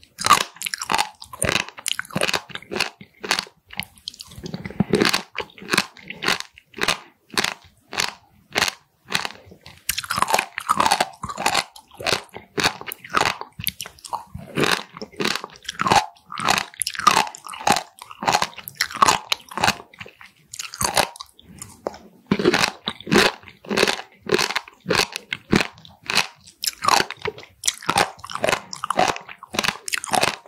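Close-miked chewing of raw warty sea squirts (Styela plicata): a steady run of crisp crunches, two or three a second, as the tough raw bodies are bitten and chewed.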